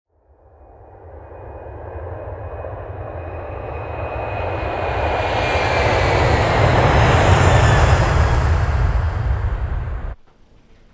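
Intro sound effect: a rushing, jet-like noise that builds steadily from nothing over about seven seconds, with a faint high whine drifting slightly downward, then cuts off suddenly.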